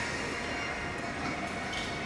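Steady background noise of a large glass-roofed indoor hall: an even hum with a few faint steady tones in it.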